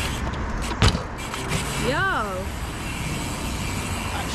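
Dirt jump bike landing back on asphalt with one sharp thump about a second in, after a tailwhip done on the flat, then its tyres rolling on over the tarmac with a steady low rumble.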